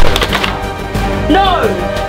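A loud crash with a short clatter right at the start as a PlayStation console is smashed onto the floor, then background music.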